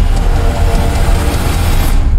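Motorcycle engines running loud, with a dense rushing noise that cuts off suddenly at the end.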